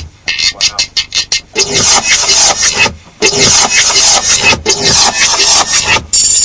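A resampled sound played back from studio sampling gear, chopped into rapid stuttering bursts for about a second and a half, then running on more smoothly with a brief drop-out near the middle.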